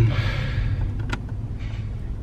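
Steady low rumble of a car's engine and road noise, heard inside the cabin while driving, with a single short click about a second in.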